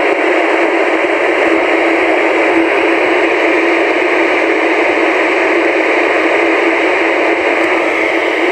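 A Maxon SM-4150 VHF FM mobile radio's speaker giving a loud, steady receiver hiss with the squelch open and no station coming through, while it monitors MURS channel 4 for distant mobiles. The hiss has a narrow, tinny radio-speaker quality.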